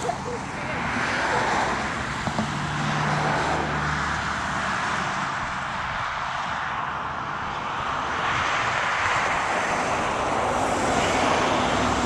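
Road traffic going past, a steady noise that swells and fades a few times with a faint low engine hum underneath.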